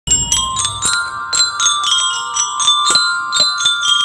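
Marching bell lyres (glockenspiels) struck with mallets, playing a quick melody of about four notes a second, each metal bar ringing on under the next.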